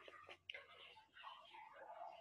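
Near silence with a faint, murmured voice, like whispering.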